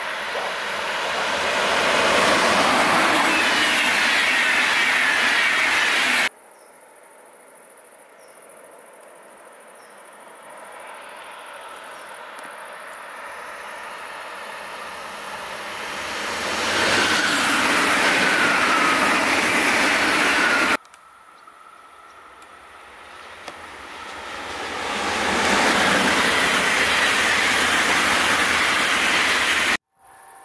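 Electric passenger trains passing at speed in three separate shots: a green FlixTrain locomotive-hauled train, then an ICE high-speed train, then another train. Each swells from a distance to a loud, steady rush of wheels on rail, with a high whine that falls in pitch as the train passes. Each shot is cut off abruptly, about 6 s in, about 21 s in, and just before the end.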